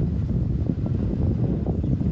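Wind buffeting the microphone: a loud, steady, low rumble.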